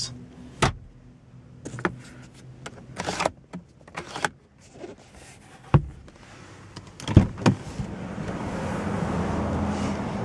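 Car glove box lid shutting with a knock, followed by scattered clicks and knocks of hands and things moving about inside the car cabin. Near the end the car door opens and a steady hum from outside grows louder.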